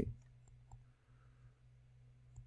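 A few faint clicks of a stylus tapping a tablet as writing is added, over a steady low hum.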